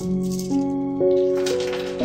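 A handful of small hard white pieces rattling as they fall into an open box, a short burst in the second half. Background music plays slow held notes, a new one about every half second.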